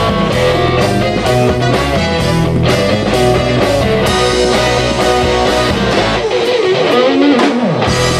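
Live rock band playing, with electric guitar to the fore over bass and a drum kit. About three-quarters of the way through, the bass and drums drop out for a moment and a falling slide leads back in.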